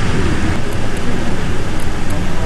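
Steady, loud rushing noise with a heavy, fluctuating low rumble: wind buffeting an outdoor microphone.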